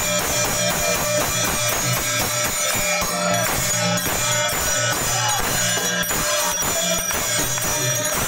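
Devotional aarti music: a group singing to a steady, even beat of metallic hand-cymbal strikes and hand clapping.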